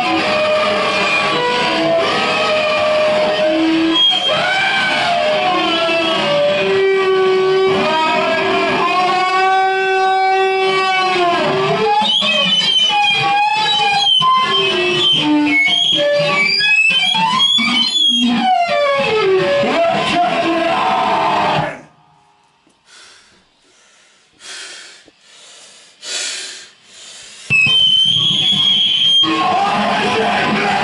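Live power electronics noise set: loud distorted electronic noise full of wavering, gliding pitched tones. About 22 seconds in it cuts out abruptly and drops away to a few faint bursts, then comes back loud about five seconds later with a high steady tone.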